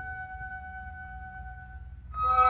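Symphony orchestra in a quiet passage, a single held note fading away over a steady low rumble from an old recording.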